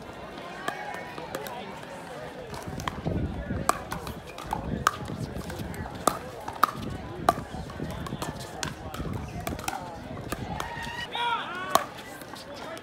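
Pickleball paddles striking a hard plastic ball during a rally: a string of sharp pops, irregularly spaced about a second apart through the middle, with one loud pop near the end, over voices from around the courts.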